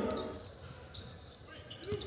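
Faint basketball game sound: a ball being dribbled on a hardwood court, heard under low arena noise after the commentary fades out.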